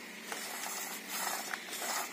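Recoil starter of a 45cc engine, held loose in the hand, with its starting rope being drawn out. The spring-loaded pulley unwinds faintly, with a few light clicks.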